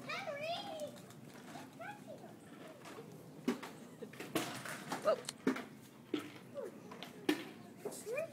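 Young children's voices at play: a high, wavering child's voice in the first second, then scattered short calls mixed with sharp clicks.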